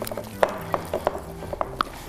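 Wire whisk beating a thick beer batter in a glass bowl, with about six light, irregular clicks of the whisk against the glass.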